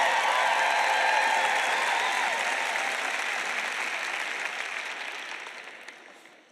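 Large audience applauding, the clapping steady at first and then fading away over the last few seconds.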